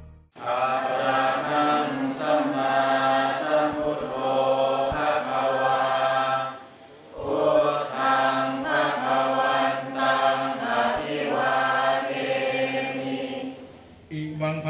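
Buddhist devotional chanting by many voices in unison, with a short pause for breath about halfway through.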